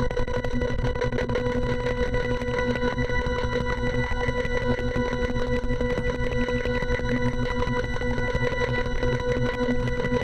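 Electronic music: one steady held drone made of several evenly spaced tones, over a dense, rapidly flickering low rumble, unchanging throughout.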